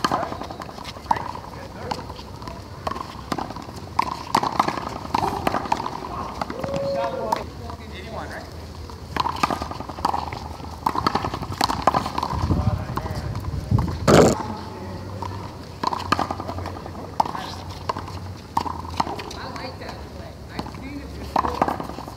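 One-wall handball rally: a small rubber ball is slapped by hand and smacks off the concrete wall again and again, with sneakers moving on the court and players' voices. The sharpest smack comes about two-thirds of the way through.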